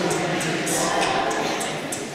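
Mixed-voice a cappella group singing sustained chords, with short crisp hiss-like accents recurring on top.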